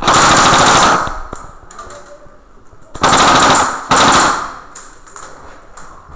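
Airsoft rifle firing on full auto in three bursts: one about a second long at the start, then two shorter ones a little after the halfway point.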